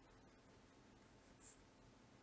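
Near silence with faint strokes of a fine-tipped pen on paper as a dashed line is drawn, with one brief scratch about one and a half seconds in.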